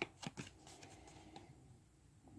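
Magic: The Gathering trading cards being handled, slid and flicked against each other, with a few quick clicks in the first half second and fainter rustles after.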